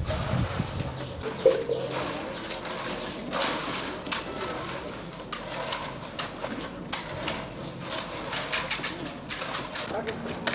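Workers' hand tools scraping and knocking on wet concrete in irregular strokes as a fresh road slab is spread and levelled, with a bird calling briefly.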